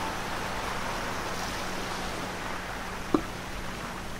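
Sea waves rushing in a steady wash of surf noise, slowly fading, with one short knock about three seconds in.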